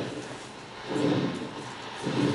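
Film soundtrack played over a hall's speakers: a repeating low pulse, about one a second, that stands for the alien radio signal being picked up by the radio telescope.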